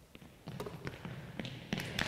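A few faint knocks and taps on a hardwood gym floor during a basketball passing drill: the ball caught in players' hands and sneaker footsteps, in an echoing hall.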